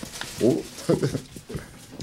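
A person's voice making a few short wordless sounds in the first second, then a lull.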